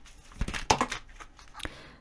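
A deck of tarot cards being shuffled by hand: a run of short card snaps and slides, thickest between about half a second and a second in, with one more near the end.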